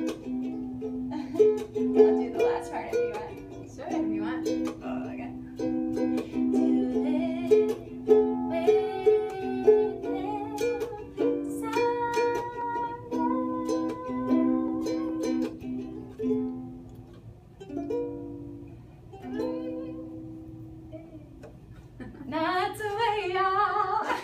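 Ukulele strummed in chords, fading out after about twenty seconds, followed by a person's voice near the end.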